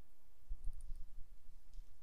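A few light computer-mouse clicks, with soft low bumps about half a second in.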